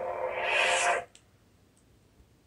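Lightsaber sound-font hum from the hilt's speaker, then a rising swish of the power-down effect that cuts off suddenly about a second in as the blade goes dark.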